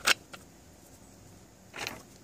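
Porous lava rocks handled in a terracotta pot: a sharp click right at the start, a softer one just after, and a brief rustling scrape near the end, with quiet in between.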